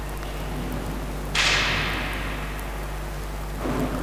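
Steady electrical hum from the hall's amplified sound system. About a second and a half in, a sudden hiss of noise starts and fades away slowly over about two seconds. Faint speech returns near the end.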